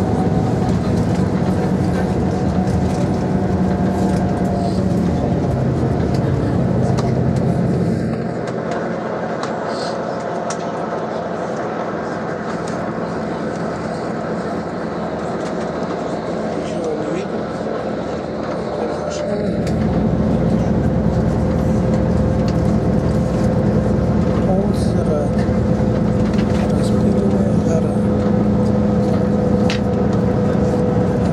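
Bus engine and road noise heard from inside the cabin while climbing a mountain road: a steady low drone that weakens for about ten seconds in the middle, then comes back up.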